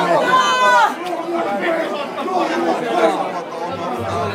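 Crowd of people chattering, many voices talking at once, with one voice standing out louder in the first second.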